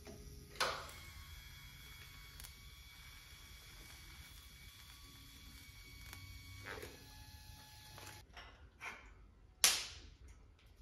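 Faint, steady hum of an electric welding arc. It starts with a click just after the start and cuts off about eight seconds in. A single sharp knock near the end is the loudest sound.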